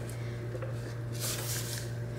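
Soft rustling of a sheet of sublimation transfer paper being handled and set down on the table, a few faint brushes over a steady low hum.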